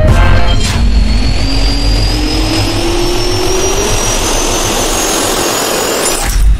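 Jet turbine spool-up sound effect: a loud rush of air with a whine that climbs steadily in pitch, cutting off at the end.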